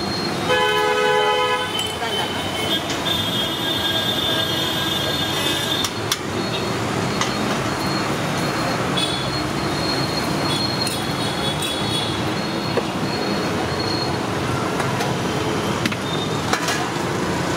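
Roadside traffic noise, steady throughout, with a vehicle horn sounding for about a second early on and thin high squeals over the top.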